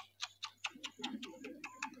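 A pause in speech filled by faint, rapid, even clicking, about five ticks a second, over a faint low murmur.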